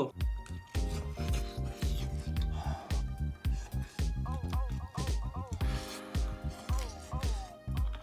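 Background music with a steady beat and a gliding melody.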